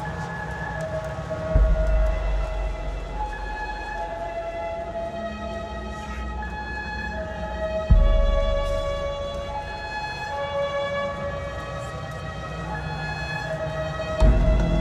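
Hardstyle breakdown: a slow synth melody of long, held notes over a low drone. Two deep sub-bass booms land about one and a half seconds in and again near eight seconds.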